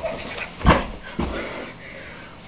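Two thumps about half a second apart, the first louder and sharper.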